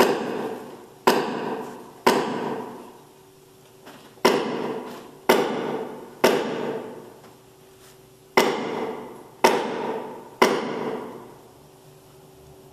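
Hammer striking a wooden block nine times, in three groups of three about a second apart, each blow ringing out in the church's long reverberation. It marks the crucifixion in a tenebrae service.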